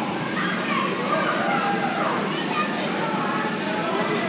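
Many children shouting and chattering at once in a large indoor hall, a steady din of overlapping voices.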